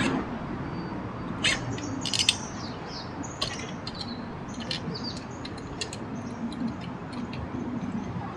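Birds chirping in short, high, quick calls throughout, with a few sharp clicks and knocks in the first few seconds from the folded trifold bicycle being handled as its handlebar is raised and its seat post lowered.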